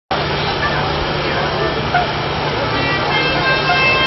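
Busy crowd din: many voices talking at once under a steady hum, with sustained high tones coming in about three seconds in.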